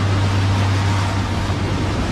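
Storm wind sound effect: a loud, steady rush of noise over a deep low rumble, swelling up at the start.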